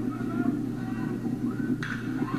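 Ballpark crowd chatter, then near the end a single sharp crack as a metal baseball bat hits the pitch.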